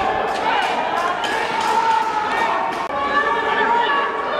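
Footballers shouting and calling out to one another on the pitch, with several short sharp thuds among the voices.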